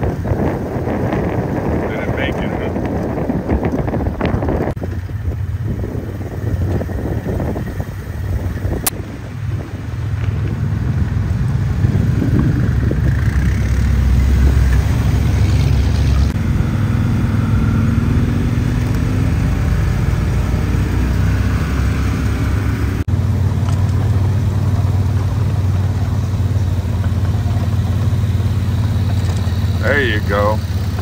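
A vehicle engine running steadily at low revs, with wind rushing across the microphone during the first few seconds.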